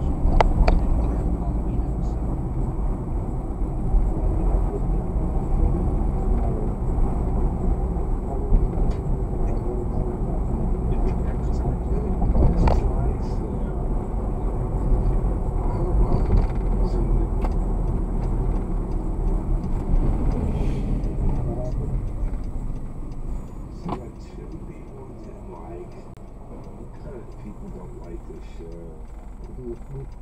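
Car driving noise picked up by a dashcam: a steady low road-and-engine rumble with occasional light knocks. Near the end it drops off and quietens as the car slows and stops.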